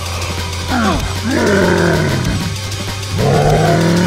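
Background music with three loud, drawn-out cries or yells over it, the first two falling in pitch and the last held steady near the end.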